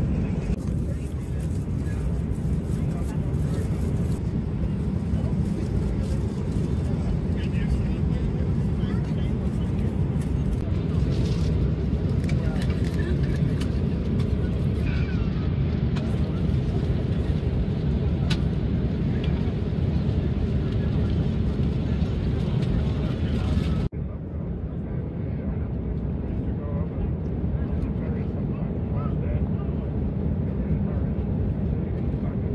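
Steady low drone of an airliner cabin in flight, with faint voices of other passengers under it. About three-quarters of the way through, the sound changes abruptly and the upper hiss drops out, leaving the low rumble.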